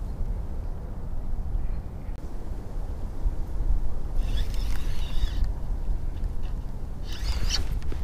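Wind buffeting the microphone, a steady low rumble, with two short bursts of higher hiss or rustle about four and seven seconds in.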